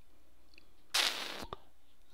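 Low room tone broken by a short burst of hiss lasting about half a second, about a second in, followed by a single faint mouse click.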